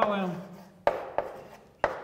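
Chalk tapping against a blackboard during writing: a few sharp taps, the two loudest about a second apart.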